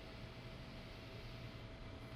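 Quiet room tone: a faint steady hiss with a thin, steady whine underneath.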